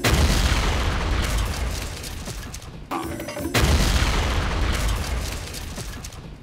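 Two big cartoon booms, one at the start and another about three and a half seconds in, each a loud deep blast that rumbles away over a few seconds.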